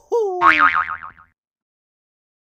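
Cartoon 'boing' sound effect: a short tone sliding down in pitch, overlapped by a wobbling twang that dies away about a second in.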